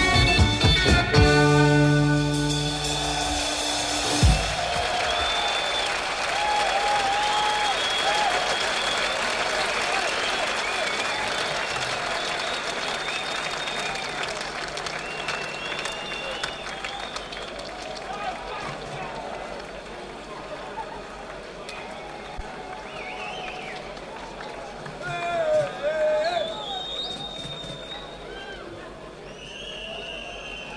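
A rock band's closing chord, with bass and guitar ringing out over the first four seconds or so. Then a large concert audience applauds and cheers, slowly dying away, with a brief louder burst of shouting near the end.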